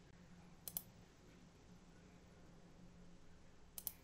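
Faint computer mouse clicks over near-silent room tone: a quick double click under a second in and another near the end.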